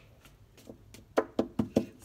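Four quick knocks on a deck of tarot cards held against a table, about a fifth of a second apart, coming a little past halfway through.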